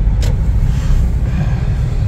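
Steady low rumble of a car driving, heard from inside the cabin, with one light click shortly after the start.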